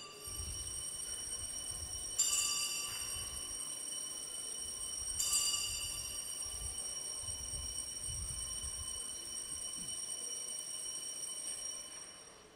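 Altar bells rung at the elevation of the consecrated host: a bright ring struck about two seconds in and again about five seconds in, each left to ring out, dying away near the end.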